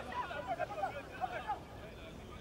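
Several people's voices talking and calling out over one another, in short, overlapping bursts.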